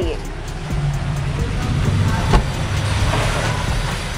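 Low, steady rumble of road traffic, with one sharp click a little over two seconds in.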